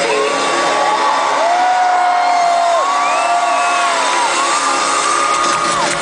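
Live stadium concert recorded from within the crowd: loud amplified pop music through the PA, with long held notes about a second each that bend at their ends, and fans whooping.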